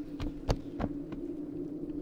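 A steady low hum under a run of sharp, irregular clicks and knocks, the loudest about half a second in.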